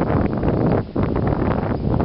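Wind buffeting the camera microphone: a loud, rough rush heaviest in the low end, with a brief lull a little under a second in.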